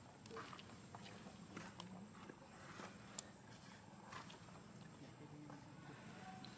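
Near silence with faint scattered rustles and small ticks of dry leaf litter as small monkeys shift about on it, and one sharper click about three seconds in.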